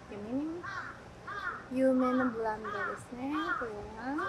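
Crows cawing, a quick run of short calls, with a person's voice beneath them.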